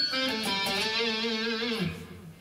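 Electric guitar playing a short single-note lead phrase in A minor: a few quick notes, then a long held note with vibrato that stops just before the end.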